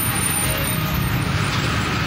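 Steady road traffic noise with the low hum of vehicle engines running.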